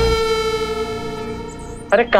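Background music: a single held synthesizer note with overtones, fading slowly. A low rumble under it cuts off just after the start.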